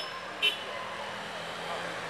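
Faint town street ambience with traffic, and a brief sharp sound about half a second in.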